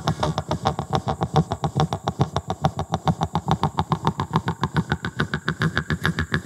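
Doromb Black Fire mouth harp (jaw harp) plucked in a fast, even rhythm of about eight twangs a second over its steady drone.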